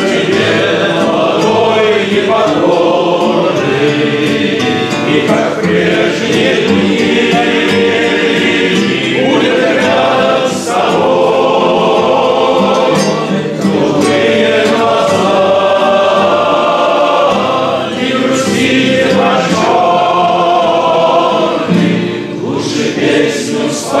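A room of mostly male voices singing a song together, accompanied by acoustic guitars.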